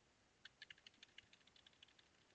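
Faint, rapid typing on a computer keyboard, a quick run of small clicks starting about half a second in.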